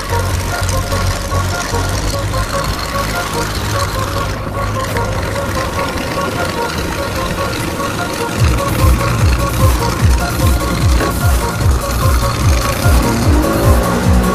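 Outboard motor running at low speed, joined about eight seconds in by music with a steady beat; near the end the outboard revs up, its pitch rising, as the boat pulls away.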